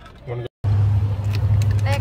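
A loud, steady low hum begins about half a second in, just after a brief break in the sound, and holds evenly. A short stretch of voice comes before the break.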